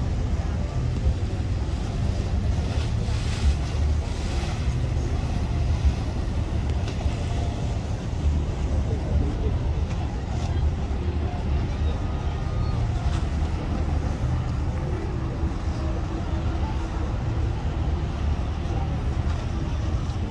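Steady low rumble of a boat's engine running while under way.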